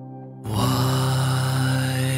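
Yamaha grand piano: soft sustained notes, then a fuller, louder chord struck about half a second in and held as the song begins.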